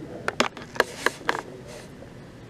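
About five short, sharp clicks and taps in a small quiet room, close together in the first second and a half, over a low steady room hum.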